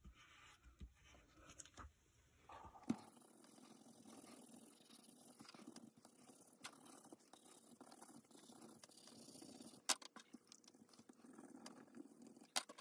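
Faint scratching of a pencil crayon shading on paper, with a couple of sharp clicks.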